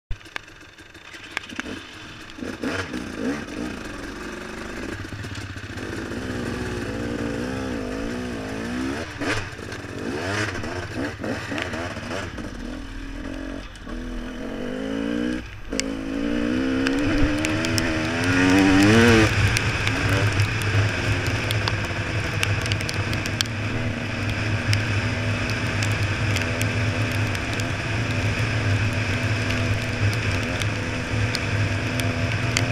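Enduro motorcycle engine heard from the rider's helmet camera, revving up and down repeatedly with brief drops as the throttle closes, loudest about nineteen seconds in. After that it holds a steadier note with a constant hiss. It is quieter for the first couple of seconds.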